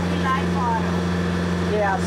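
Sailboat's engine running steadily under way, a low even drone with a constant pitch.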